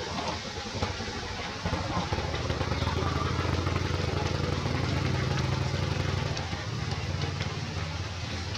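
A motor vehicle engine running steadily nearby. It grows louder about one and a half seconds in and eases off again near the end.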